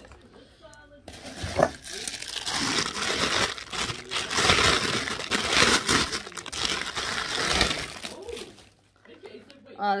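Clear plastic packaging bag crinkling loudly as it is handled and pulled open to take out a wooden bird toy. The crinkling starts about a second in and stops shortly before the end.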